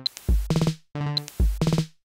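Glitchy electronic beat from a TidalCycles pattern of drum-machine samples. Deep kick thumps, sharp clicks and snare hits alternate with short pitched synth notes from the pitched-down 'arpy' sample, in an irregular, stop-start rhythm with brief silent gaps between hits.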